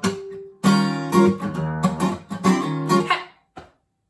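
Acoustic guitar strummed in chords, a stroke about every half second, the playing stopping a little past three seconds in.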